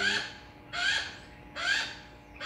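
A hawk giving harsh, raspy calls, three of them evenly spaced a little under a second apart.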